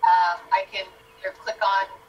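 A person's voice coming through a video-call connection in short bursts, with no words that can be made out, over a faint steady tone.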